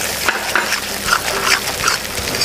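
Metal spatula stirring and scraping thick, wet spice paste frying in an aluminium kadai, in several quick strokes.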